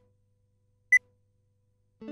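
Countdown beep from an animated logo intro: a single short, high electronic beep about a second in, with near silence around it.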